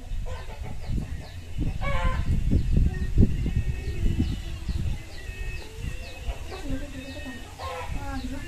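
Chickens calling: a run of short high cheeping notes, about two a second, with a louder call about two seconds in and another near the end.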